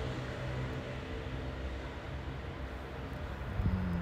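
Steady low rumble of road traffic, with a low hum that fades out about a second in and a soft knock near the end.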